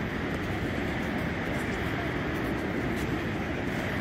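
Steady roar of Niagara Falls' falling water, an even rumble that does not change.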